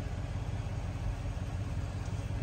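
Car engine idling with a low, steady rumble.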